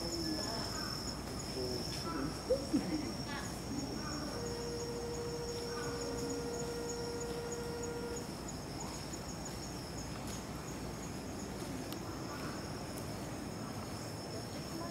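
Steady high-pitched insect chorus, with a faster pulsing trill running above it. A lower steady hum-like tone holds for about four seconds midway, and two short sharp sounds come about two and a half seconds in.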